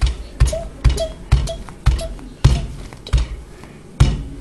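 Metal meat tenderizer mallet pounding a marshmallow Peep on a paper towel over a hard countertop: about seven dull thuds, roughly two a second.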